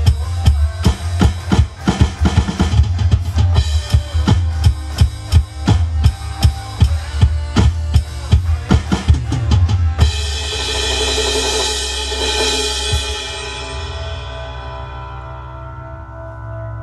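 Drums played hard on an Alesis electronic drum kit over the backing song, with strikes several times a second. About ten seconds in the playing stops on a final crash, and a cymbal wash and the band's held last chord ring on and fade.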